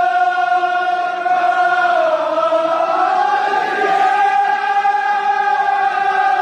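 A group of men chanting a Kashmiri marsiya in unison, holding long notes; the pitch dips about two seconds in, then rises and holds again.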